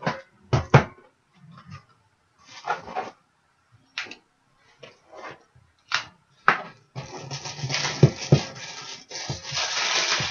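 Trading cards and rigid plastic card holders handled on a table: a series of separate clicks and taps, then from about seven seconds in a steady crinkling of a plastic card wrapper, with two knocks shortly after it begins.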